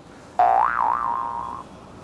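Cartoon 'boing' sound effect added in editing: a wobbly tone that starts suddenly about half a second in, swoops up in pitch, wavers, then holds steady for about a second before stopping.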